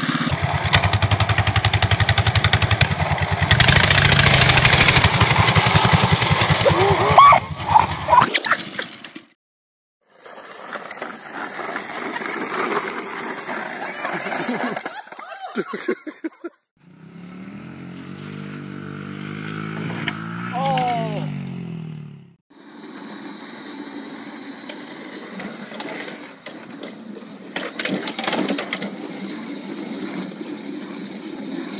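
A minibike's small gas engine running loudly for about eight seconds, then cutting off abruptly. Quieter stretches follow, with voices among them.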